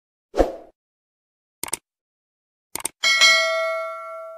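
Subscribe-button animation sound effects: a short thump, two quick double clicks like a mouse clicking the button and the bell, then a notification bell ding that rings out and fades.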